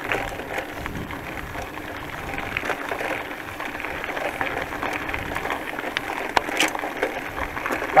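Bicycle tyres rolling over a loose gravel road: a steady crunching hiss with scattered small clicks of stones.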